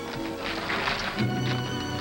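Orchestral film score music over horses' hoofbeats, with a brief horse whinny about half a second in.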